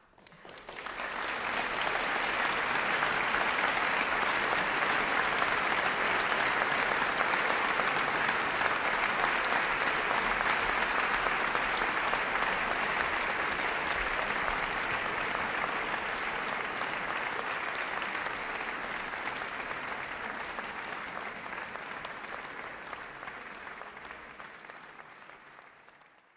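Audience applause in a concert hall: it starts right after the final chord dies away, builds within a couple of seconds to a steady level, then gradually thins and fades out over the last several seconds.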